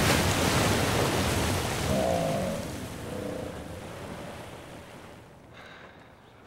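A huge splash into a lake as the giant slug is dropped in: a wash of rushing, falling water that fades away steadily over about five seconds.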